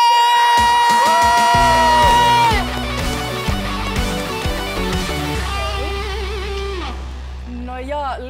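Electric guitar playing a loud walk-on riff: a held high note bent up and back in the first two seconds, then a run of lower notes, ending on a long held low note that fades away.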